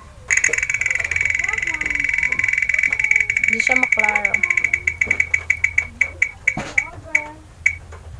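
Spin-the-wheel phone app ticking through the phone's speaker as its wheel spins. A rapid run of high clicks starts suddenly just after the start and gradually slows into separate ticks that stop near the end as the wheel comes to rest.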